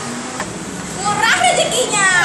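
A woman's high-pitched, excited voice calling out, starting about a second in.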